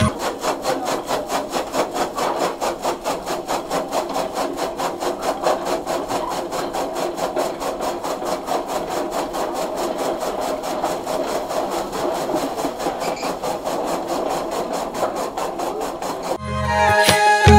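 Electric chaff cutter running and chopping green fodder stalks fed into its chute, its blades cutting in a fast, even rhythm of short chops.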